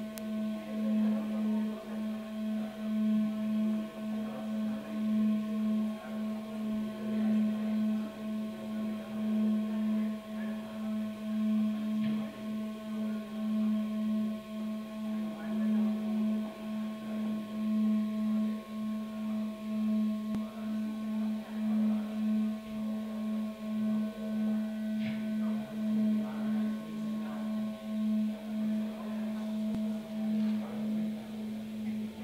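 A sustained electric guitar drone through an amplifier: one low held pitch with fainter higher tones above it, its loudness swelling and fading about once a second.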